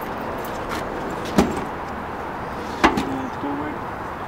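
Two sharp knocks about a second and a half apart as luggage and gear are handled in a pickup truck's bed, over steady outdoor background noise.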